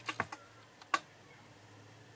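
A few short, sharp plastic clicks from handling a camcorder and turning its flip-out LCD screen, three close together at the start and one more about a second in, over a faint low hum.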